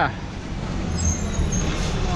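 Street traffic noise: a steady low rumble from road vehicles that swells about a second in.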